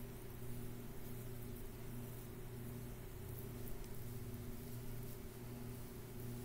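Quiet room tone: a steady low hum with faint hiss, and no distinct sound events.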